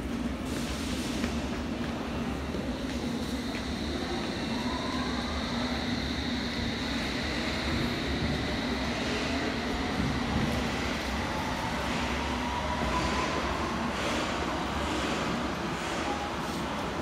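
London Underground S7 stock train running along the platform and picking up speed, a steady rumble of wheels and running gear with a rising whine from its traction motors.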